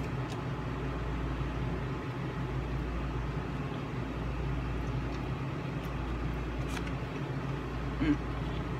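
Steady low hum of a running fan, even in level throughout, with a few faint clicks from eating.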